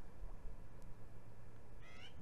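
A single short animal call near the end, rising in pitch, over a steady low background rumble.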